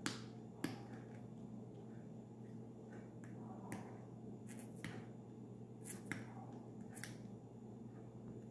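Faint, scattered sharp clicks of a plastic cosmetic tube and its cap being handled and opened, about eight in all, over a low steady hum.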